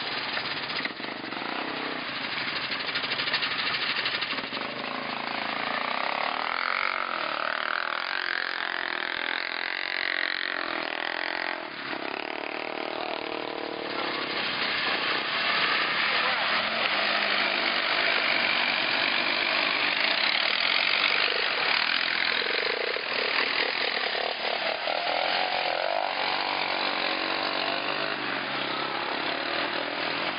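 ATV engines running and revving, rising and falling in pitch, as quads are worked through deep mud, with voices over them.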